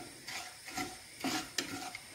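Wooden spatula stirring and scraping lumps of jaggery through hot ghee in a nonstick pan, in quick repeated strokes, with a light sizzle as the jaggery melts.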